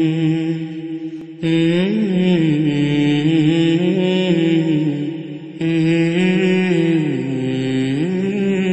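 A solo voice chanting an Islamic devotional melody, slow and ornamented, in long held notes that slide up and down. It pauses briefly about a second in and again about five and a half seconds in, then starts a new phrase each time.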